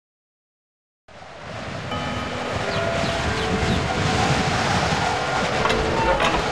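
Intro sound effect: silence for about a second, then a rushing noisy swell that grows steadily louder, with faint steady tones running through it.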